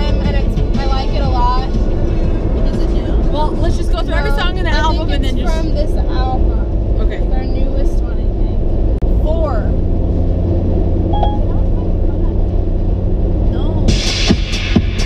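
Steady low road rumble inside a moving car, with a singing voice and music over it.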